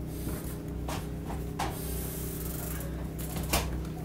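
A few light knocks and scrapes of a clear plastic storage tote being picked up and handled, the loudest near the end, over a steady low hum.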